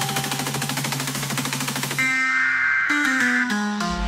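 Electronic dubstep track: a rapid, stuttering drum roll over held bass notes, then the drums cut out about halfway, leaving sustained synth chords and a bassline stepping through a few notes as a build-up.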